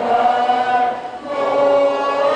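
A teenage girl's solo voice singing a national anthem into a microphone over the ballpark's sound system, with long held notes and a short dip between phrases about a second in.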